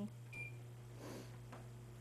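One short, high electronic beep from a kitchen appliance's keypad, then faint rustling over a steady low hum.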